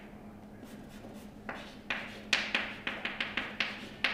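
Chalk writing on a blackboard: quiet at first, then from about a second and a half in a quick run of sharp chalk taps and strokes as letters are written.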